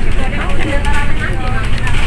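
Steady low rumble of a moving bus heard from inside the cabin, with people talking over it.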